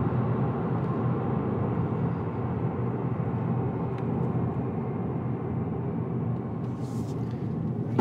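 Steady cabin road noise of a 2024 Subaru Impreza RS driving: tyre and engine sound heard from inside the car.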